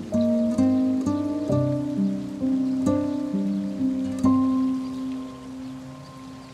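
Soft background score: a plucked guitar playing a slow melody of single notes, the last note held and fading away.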